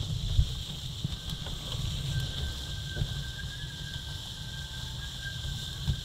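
Wind buffeting the microphone of an onboard camera on a Nacra F18 sailing catamaran under way, over a steady hiss of water rushing past the hulls, with a faint thin whistle through the middle of the stretch.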